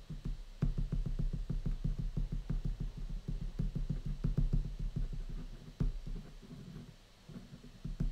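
Quick back-and-forth hatching strokes of a white marker on paper, heard as a rapid run of light taps and scratches, several a second. The strokes start just under a second in and thin out near the end.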